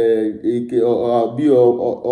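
Only a man's voice, in a drawn-out, chant-like delivery: a repeated phrase with held, sing-song pitches.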